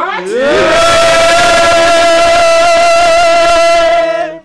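A man singing into a microphone slides up to a high note about half a second in and holds it for about three seconds, with the group's voices shouting along underneath.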